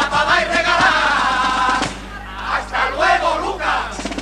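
A male carnival murga chorus singing together, ending on a held chord that breaks off about two seconds in, followed by shouting voices.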